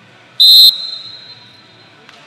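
Wrestling referee's whistle: one short, shrill blast about half a second in, ringing on in the arena as it fades, stopping the action.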